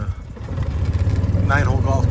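A vehicle's motor running steadily as it pulls away. The steady hum begins about half a second in and grows louder.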